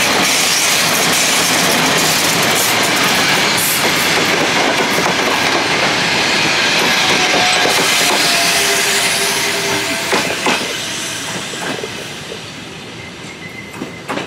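Electric locomotive and passenger coaches passing close by on the next track: a loud, steady rush of wheels on rail with scattered clicks from the rail joints and a faint wheel squeal midway. The noise fades over the last few seconds as the end of the train goes by.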